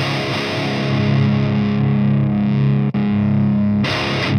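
Seven-string electric guitar played through a high-gain Fortin amp head: a heavily distorted chord held ringing for about three seconds, briefly cut off and struck again near the end, with tight palm-muted riffing starting right after.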